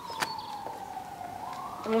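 A siren wailing in the distance, its pitch sliding slowly down and then back up, with a short click just after the start.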